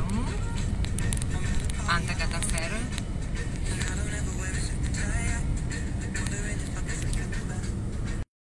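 Steady low rumble of a moving vehicle heard from inside its cabin, with voices over it.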